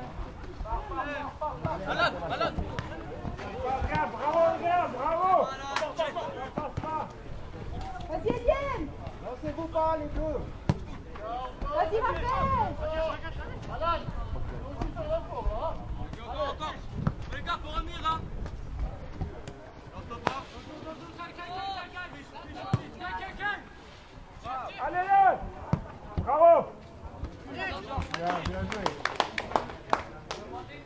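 Football players shouting and calling to each other across the pitch, with the occasional thud of the ball being kicked.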